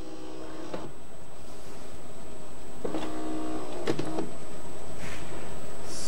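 Gaggia Anima Prestige bean-to-cup coffee machine running its rinse cycle before it is ready for use: an internal motor whirs briefly at the start and again for about a second in the middle, over a steady hum that slowly grows louder.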